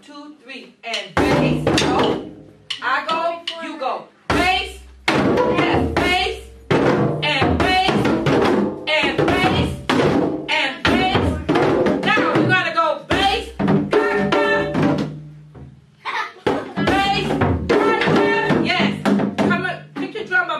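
A group of djembe hand drums struck in call-and-response, the leader's pattern answered by the children's drums, with several short pauses between phrases. Voices sound over the drumming.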